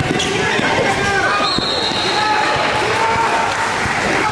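A basketball dribbled on an indoor court, its bounces sharpest in the first second, under the voices of players and spectators. A short, steady high-pitched tone sounds about a second and a half in.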